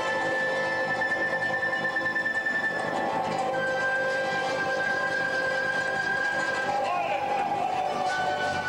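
Andean folk ensemble playing live: strummed charangos and guitar under long held high notes from the wind section. The first note lasts about three seconds, and after a short gap a slightly lower one is held for about three seconds more.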